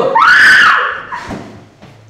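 A young person's high-pitched scream, rising and then falling in pitch, lasting under a second from just after the start and fading out, followed by a few faint knocks.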